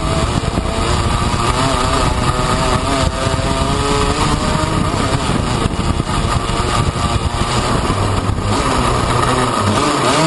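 Piaggio Ape three-wheeler's small engine running hard on a dirt track, heard from a camera on the cab roof. Its pitch keeps rising and falling as the throttle is worked, over a constant rough rumble from wind and the bumpy ground.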